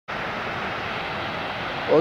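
Steady rushing noise of a waterfall, an even roar of falling water that holds level throughout.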